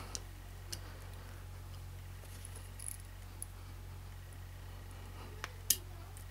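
Faint, scattered clicks of small metal and polymer gun parts being handled as a slide cover plate is worked onto the back of a Glock 26 slide against its springs, with a sharper click near the end. A steady low hum runs underneath.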